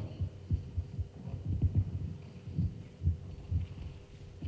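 Footsteps on a carpeted stage, heard as dull low thuds a few times a second, uneven in strength, over a faint steady electrical hum.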